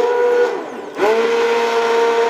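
Immersion blender whining as it purées soup in a stainless steel pot. The motor slows and quietens about half a second in, then spins back up to a steady high whine about a second in.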